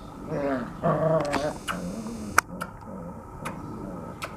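Puppies whimpering and growling in short wavering cries during the first second and a half, then lower growls, with a few sharp clicks, the loudest about two and a half seconds in.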